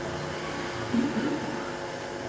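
Steady low hum and hiss of the room and sound system in a pause between speech, with a brief faint voice about a second in.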